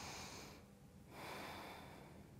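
A woman's faint breathing during a held yoga stretch: one breath ending about half a second in, then a second breath from about a second in until near the end.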